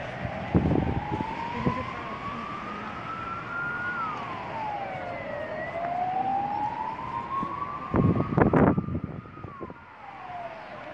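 An emergency vehicle's siren wailing, its pitch rising slowly for several seconds and then dropping quickly, twice over. Two brief low thumps cut in, about half a second in and more strongly near the end.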